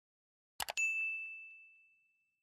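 Two quick mouse-click sound effects, then a bright notification-bell ding that rings on one clear note and fades away over about a second and a half: the sound effect of the subscribe animation's cursor clicking the notification bell.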